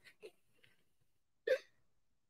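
Mostly quiet, with one short vocal catch from a man's throat, like a hiccup, about a second and a half in.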